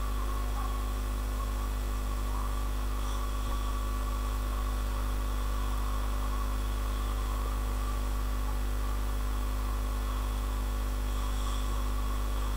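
Steady low electrical hum with faint hiss, unchanging in level throughout.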